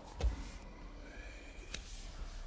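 A single soft low thump about a quarter of a second in, then quiet room tone with a faint wavering whine in the second half.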